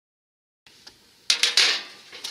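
Silent for over half a second, then about a second and a half in a metal tray clatters and scrapes briefly against brick pavers as it is picked up.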